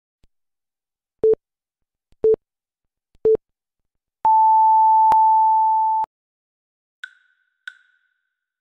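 Electronic film-leader countdown beeps: three short low beeps a second apart, then one long, higher beep lasting about two seconds. Near the end come two short high pings.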